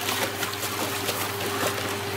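Water splashing and sloshing in a plastic tub as a large spiny lobster moves about and gloved hands grab it, with irregular splashes over a steady background hum.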